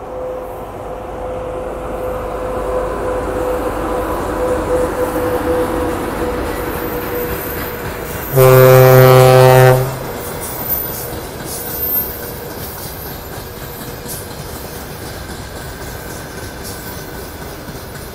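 A VL80K electric locomotive hauling a freight train, its running noise growing as it comes closer. About eight seconds in it gives one long, very loud horn blast lasting over a second. After that comes the steady rumble of freight wagons rolling past, with a couple of thumps from the wheels on the rail joints.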